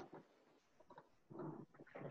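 Near silence, broken by a faint click at the start and a few faint, brief sounds about a second in.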